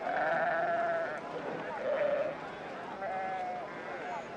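Sheep bleating: three wavering calls, the first long and the two later ones shorter.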